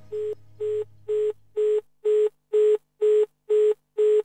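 Telephone engaged (busy) tone: short beeps of one steady pitch, about two a second, growing louder as the last of the dance track's music fades out in the first two seconds.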